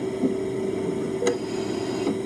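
Hospital medical equipment running with a steady hum, and a short click and beep a little over a second in.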